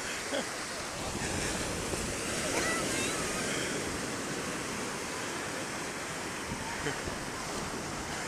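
Atlantic Ocean surf breaking on the beach, a steady rushing wash that swells a little about a second in and eases off after a few seconds.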